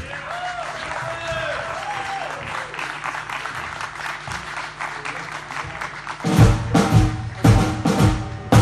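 Audience applause and cheers over a held low bass note, then about six seconds in a blues band comes in together with loud drum and bass hits.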